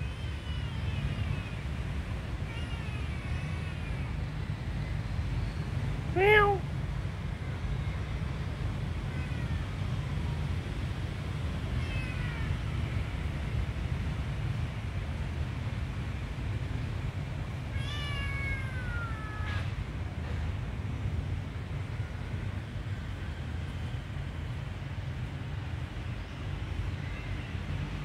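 A young kitten meowing: one loud cry about six seconds in, with fainter high, falling calls now and then, over a steady low rumble.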